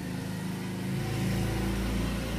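Low, steady rumble of a motor vehicle engine, growing a little louder about a second in.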